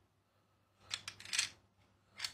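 Wild boar tusks clicking and clattering against one another as a hand shifts them in a pile. There is a short run of rattles about a second in.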